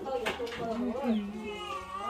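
A person's voice talking, with some drawn-out, sliding vowels.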